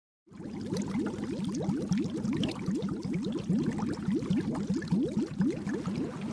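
Bubbling water sound effect: a dense stream of short rising bubble blips over a low hum, starting abruptly about a quarter second in.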